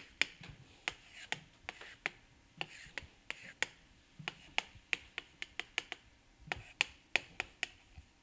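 Chalk on a blackboard: sharp irregular taps and short scrapes, several a second, as lines are drawn.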